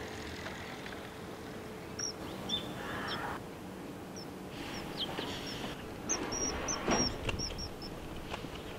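Common kingfisher calling with thin, high notes: a few single calls, then a quick run of about nine short calls near the end. A steady outdoor background haze sits underneath, with a brief noisy burst about seven seconds in.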